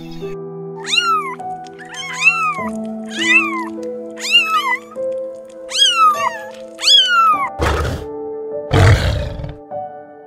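Kittens meowing about six times, roughly once a second, over background music with long held notes. Near the end two loud lion growls take over.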